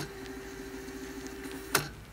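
Background music in a quiet passage: a faint held note, with a sharp click near the end.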